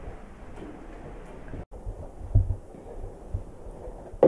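Low, dull thumps over a faint steady hiss: a loud double thump about two seconds in and a smaller single thump about a second later, just after the sound cuts out completely for a split second.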